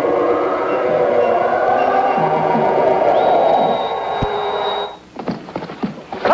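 Sustained orchestral film score with a high held note entering about three seconds in; near the end the music drops away and splashing takes over as a horse gallops through a shallow river.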